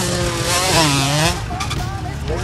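Small youth motocross bike engine running at high revs. Its pitch dips about halfway through and then climbs again.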